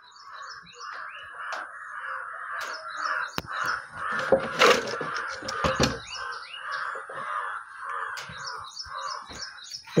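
Crows cawing continuously while small birds chirp in quick repeated phrases, with a few sharp knocks and rubs from the phone being handled around the middle.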